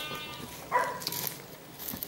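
Livestock bleating: one long call that tails off in the first half second, then a short call about halfway through.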